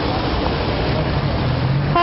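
Street traffic: a car driving past on a wet road, its tyres hissing on the wet surface over a steady low engine hum.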